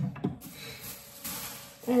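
Thin plastic shopping bag rustling and crinkling for about a second and a half as an item is pulled out of it.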